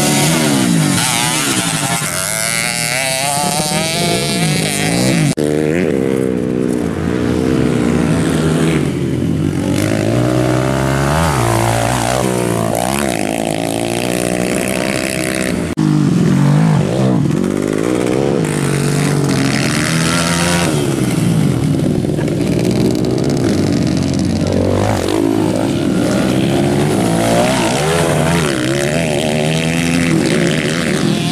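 Several dirt-bike engines revving up and down as they race around a dirt grasstrack, the pitch rising and falling with the throttle through the corners and straights. The sound changes suddenly twice, about five and sixteen seconds in.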